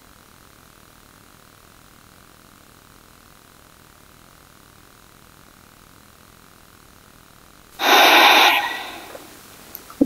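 A woman's forceful exhale through the nostrils, letting go of a long-held yogic breath retention: a sudden loud rush of air nearly eight seconds in, fading over about a second and a half. Before it, only faint steady room hiss.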